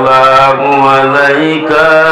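A man chanting solo into a microphone in long, drawn-out melodic notes that waver and step in pitch.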